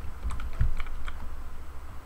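Computer keyboard typing: a short run of quick keystrokes, then a pause, over a low steady hum.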